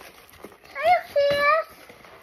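A young child's high voice: two short vocal sounds about a second in, the second held briefly, with a faint tap under it.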